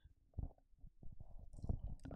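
Faint, irregular low rustling and soft bumps: handling noise near a microphone.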